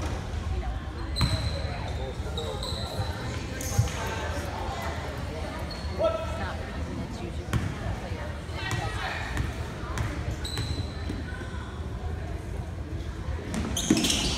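A basketball bouncing on a hardwood gym floor as a player readies free throws, a few separate knocks, over the indistinct chatter of spectators in the gym.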